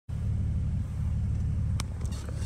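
Steady low rumble of a vehicle's engine and road noise heard from inside the cab, with one short click near the end.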